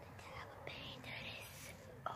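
Soft whispered speech from a boy close to the phone's microphone, quiet and breathy with no voiced tone.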